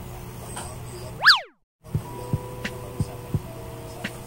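An added cartoon 'boing' sound effect, a quick upward-then-downward pitch sweep, just over a second in, followed by a brief dead silence. Then a background music bed starts: sustained steady tones over low beats, about three a second.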